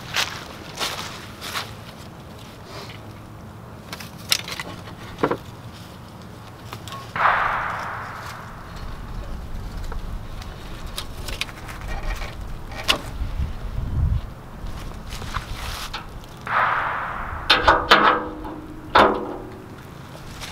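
A tow strap being handled and hooked up by hand: scattered clicks and knocks, some rustling, a low thump partway through, and two brief rushing sounds, one about seven seconds in and one near sixteen seconds.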